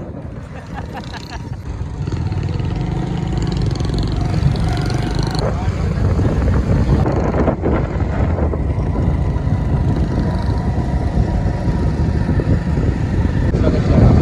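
Riding on a motorcycle at speed: a steady low rush of wind buffeting the microphone over the bike's running engine and road noise, growing louder about two seconds in as the bike picks up speed.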